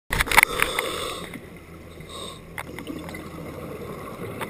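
Underwater sound heard through a dive camera's housing: a scuba regulator's breathing hiss comes and goes over steady bubbling, with a burst of sharp clicks and knocks at the very start and scattered small clicks after.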